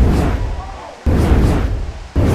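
Cinematic boom impact sound effects, three heavy hits about a second apart, each starting sharply with a deep thud and fading over most of a second, timed to title cards.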